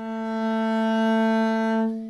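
Double bass bowed on one long held note played without vibrato, so the pitch stays dead steady. The bow swells the tone louder through the middle and eases it off near the end, an expressive swell rather than a written crescendo.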